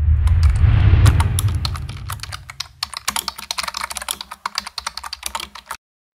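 Rapid computer-keyboard typing clicks, laid over on-screen text. In the first two seconds or so they sit over a low rumble that fades away.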